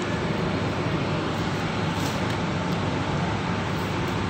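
Steady supermarket background noise: a continuous low rumble and hiss with a faint steady hum, without sudden knocks or clear voices.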